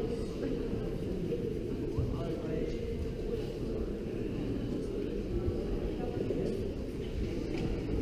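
Indistinct, distant voices in a large hall, too faint to make out words, over a steady low rumble.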